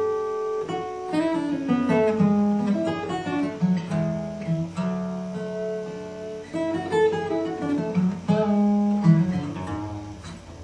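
Acoustic guitar in DADGAD tuning, fingerpicked in a flowing melodic line over bass notes. The notes are left to ring into one another rather than each one being attacked.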